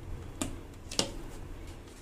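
A spoon stirring a thick whipped-cream mixture in a steel bowl, with two sharp clicks of the spoon against the metal, about half a second apart.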